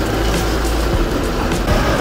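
Steady street traffic with a low rumble, with music playing in the background.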